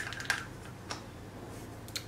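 A few light, scattered clicks, about four spread over two seconds, over faint room hum.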